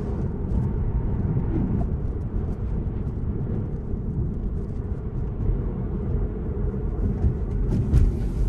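Steady low rumble of tyre and road noise heard inside the cabin of a Tesla electric car driving a winding road, with no engine sound.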